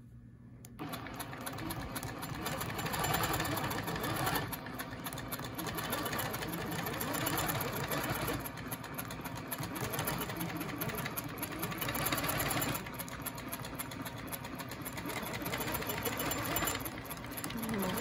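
Longarm quilting machine stitching: it starts about a second in and runs with a fast, even needle rhythm, its loudness swelling and dipping as the ruler is guided around the curves, and stops shortly before the end.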